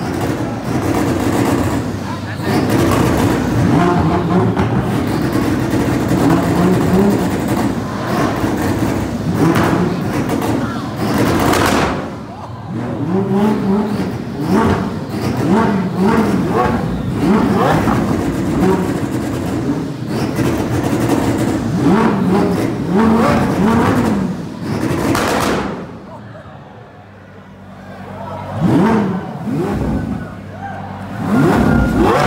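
A high-performance supercar engine revved over and over, its pitch climbing and falling with each blip of the throttle, with crowd voices underneath. The revving drops away for a couple of seconds near the end, then picks up again.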